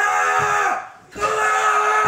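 A man yelling through a rope gag in two long drawn-out cries, the first trailing off downward, with a short break just before the second.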